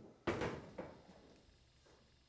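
A door shutting: a dull thump about a quarter second in, followed by a softer knock about half a second later.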